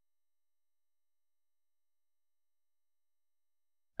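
Near silence: digitally gated room tone with no audible events.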